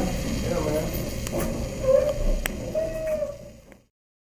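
Men's voices talking quietly in the background, with a few faint clicks, fading out to silence just before the end.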